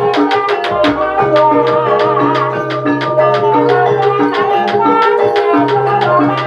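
Live Javanese gamelan playing ebeg (kuda kepang) dance music: kendang drums beat a rapid, even rhythm over ringing bronze pot gongs and metallophones, with a steady low gong tone underneath.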